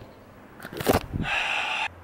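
A brief scrape and rustle of handling noise, followed by a breathy sigh of about half a second.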